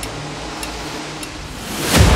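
Intro-jingle sound design: a low held note dies away under a noisy hiss, with two faint ticks, then a rising swell of noise builds toward the end.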